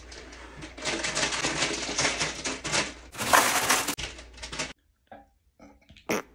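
Plastic chip bag crinkling and rustling in a run of crackles, loudest about three seconds in, stopping suddenly just before five seconds.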